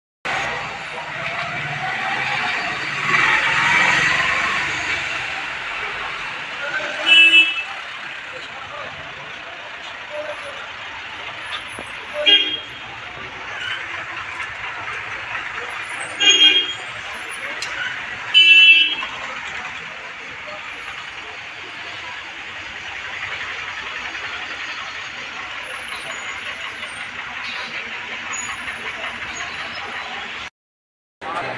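Roadside traffic running past, with a vehicle's engine swelling in the first few seconds. Car horns honk in four short blasts, spread through the first two-thirds, and voices can be heard in the background.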